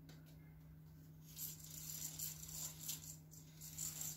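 Irregular rustling and rattling handling noise that starts about a second in and comes in several short bursts, over a steady low electrical hum.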